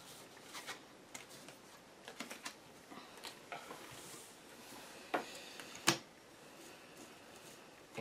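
Game cards being handled on a tabletop: picked up, slid and set down, making scattered soft taps and rustles, with two sharper taps about five and six seconds in.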